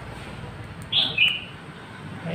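A brief high two-note chirp about a second in, the second note lower than the first, over a low steady hiss.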